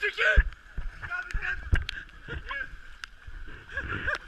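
Paddles dipping and splashing in slow river water, with a few sharp knocks of paddle shafts against an inflatable raft, as a rafting crew paddles on calm water. Laughter and bits of voices come in and out.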